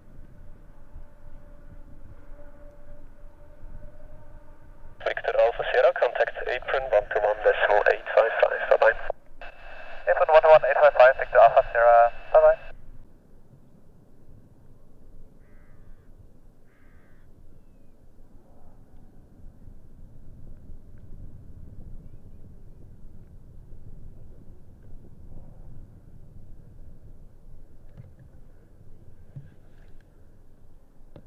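Air traffic control radio transmissions with the thin, narrow sound of a radio, in two passages about five to thirteen seconds in; the rest is a faint low rumble.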